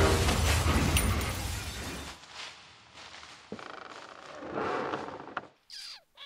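Cartoon crash sound effect dying away over about two seconds, followed by faint rattling of settling debris, a sharp click, and a brief sliding sound near the end.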